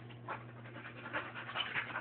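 Dog panting: a run of short breathy puffs that quickens to several a second.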